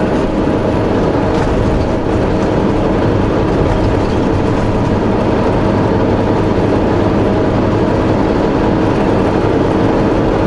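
Steady drone of a semi-truck's diesel engine with tyre and road noise, heard inside the cab while driving at an even pace, with a constant hum.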